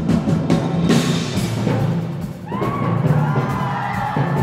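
Percussion ensemble playing, with timpani struck in rapid strokes under the texture. Voices come in with gliding high lines about two and a half seconds in.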